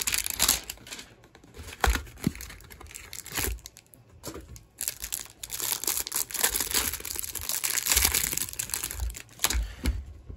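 Clear plastic wrap crinkling and tearing as a trading-card hanger box is opened and the cellophane-bagged stack of cards is pulled out, an irregular run of crackles with a few light knocks.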